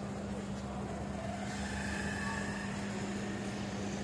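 A steady low hum on one constant pitch under an even outdoor noise, with faint voices in the background.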